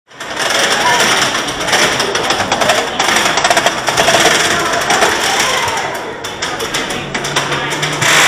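Revenge of the Mummy's Premier Rides steel coaster train rattling loudly and rapidly along its track at speed, with people's voices mixed in.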